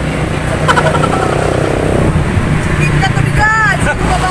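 The steady low hum of a motor vehicle engine running, with short bursts of voices over it about a second in and again near the end.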